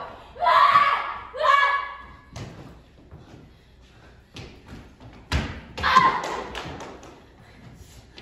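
Stage-combat fight sounds: two short shouts or effort cries, then footfalls and thuds of bodies and feet on the wooden stage floor. The loudest thud comes about five seconds in, followed by another cry, all echoing in a large room.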